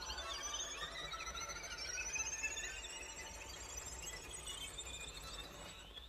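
String orchestra, led by violins, playing soft, very high sustained notes that glide slowly upward, ending on a held high note that stops just before the end.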